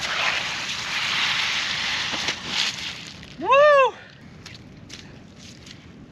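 A shark being hauled out of the shallows onto a shell beach, with splashing and scraping for about three seconds. A loud, short, rising-then-falling whooping shout follows, then a few faint ticks.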